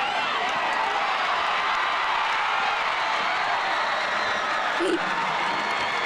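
Football crowd in the stands cheering and shouting, many voices overlapping at a steady level.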